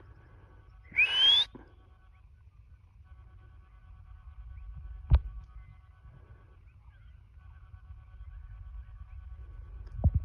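A short, loud rising whistle about a second in, then a single sharp knock about halfway through; faint steady high tones come and go underneath.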